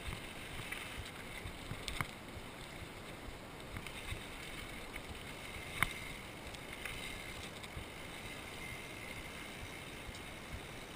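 Mountain bike rolling fast down a gravel trail: a steady rush of tyre noise on loose gravel and wind over the camera, with light rattles and clicks from the bike, and sharper knocks about two seconds in and near six seconds in.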